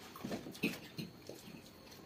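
Two people eating noodles with forks from plates: a few short, irregular mouth and fork sounds of eating.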